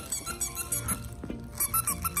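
A squeaky toy squeezed again and again in quick short squeaks, coming fastest near the end, over background music.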